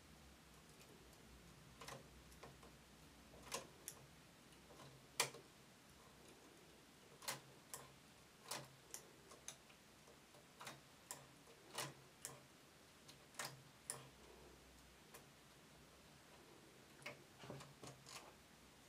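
Faint, irregular metallic clicks of a latch tool and knitting-machine needles as stitches are bound off one by one in a crochet-chain bind-off on the needle bed.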